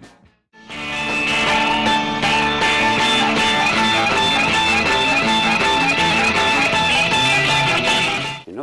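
Rock music led by electric guitar, coming in after a short gap about half a second in.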